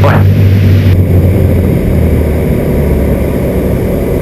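Cabin sound of a Cessna 310Q's twin piston engines and propellers on landing: a loud, steady drone. About two seconds in, it drops to a lower pitch as power comes off.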